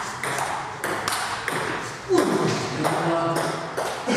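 Table tennis rally: a celluloid ball clicking off paddles and the table in quick alternating hits, a few a second, until the point ends near the end.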